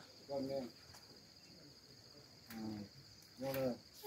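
Steady high-pitched chirring of insects throughout. Three short snatches of quiet talk break in: one near the start, one about halfway and one near the end.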